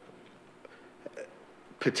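A quiet pause of room tone with two faint, short vocal sounds, then a man starts speaking near the end.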